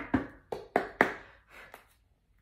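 Tarot cards being handled and shuffled: a quick run of about six sharp taps and knocks of the cards, dying away near the end.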